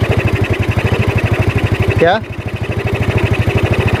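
Yamaha Mio scooter's single-cylinder four-stroke engine idling with steady, rapid, even exhaust pulses, its vacuum carburettor opened and the diaphragm rising and falling at idle. The mechanic puts this down to air leaking past a worn, loose slide bore, which also makes the revs slow to drop back to idle.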